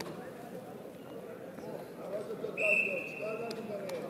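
A referee's whistle blown once, a short steady blast of about half a second near the end, restarting the wrestling bout, over murmuring voices.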